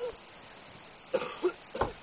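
A person coughing in three short bursts in the second half, after a brief voice sound at the start.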